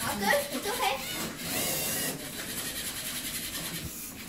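Small LEGO robot's electric motors running as it drives through its program, with a louder steady stretch about one and a half to two seconds in. Faint children's voices in the first second.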